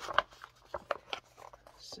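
Paper pages of a sheet-music book being turned and handled: a series of short, sharp paper crackles and rustles.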